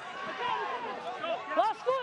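Speech: a man's voice talking faintly, the broadcast commentary running on between louder lines.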